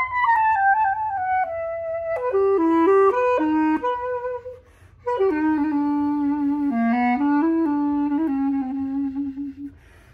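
Unaccompanied clarinet playing a samba melody: a phrase that slides down and then moves through quicker notes, a short breath pause about four and a half seconds in, then a second phrase that settles on a long low note and stops just before the end.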